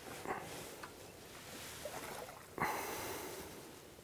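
A hooked ghost carp splashing at the water's surface, with one louder sudden splash about two and a half seconds in that fades away over about a second.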